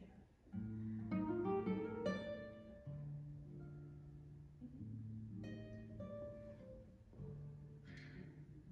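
Classical guitar playing a short passage: held bass notes under plucked notes, with a quick rising run and chords about one to two seconds in, and another chord about five and a half seconds in.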